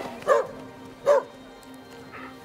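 A dog barks twice, two short single barks under a second apart, over a low held note of film-score music.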